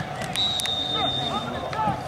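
Referee's whistle blown once, a single steady high note of about a second and a half, stopping play for a foul just after a player is brought down. Raised voices of players and spectators shout around it.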